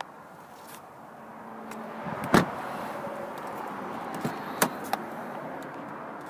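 Car door sounds: one loud thump about two seconds in, like a door being shut, followed by two lighter clicks over the next few seconds.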